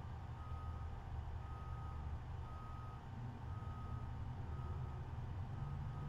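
A faint, short electronic beep repeating about once a second, over a low steady hum.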